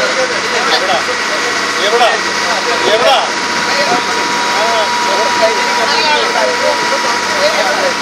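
A boat's engine running steadily while the boat cruises, heard from on board as a constant drone with a steady whine, with indistinct voices talking over it.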